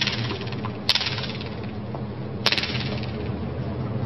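Three sharp, clicky taps, about one and then one and a half seconds apart, over a steady low hum of stadium ambience: a tennis racket knocking against the hard court or the player's shoes between points.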